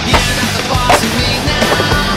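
Skateboard deck and wheels on concrete, with a sharp clack just after the start and another about a second in, over loud punk rock music.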